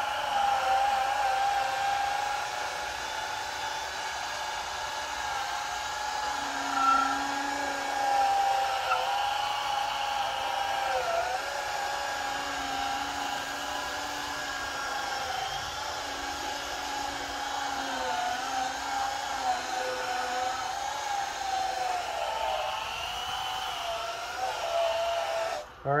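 Small cordless polisher running steadily on a plastic headlight lens, a high motor whine whose pitch dips briefly now and then as the pad is pressed into the lens. This is a final polishing pass of a headlight restoration. The tool stops just before the end.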